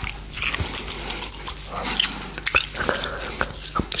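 Close-miked biting and chewing on a giant gummy candy, a run of irregular wet clicks and smacks of teeth and mouth on the hard gummy.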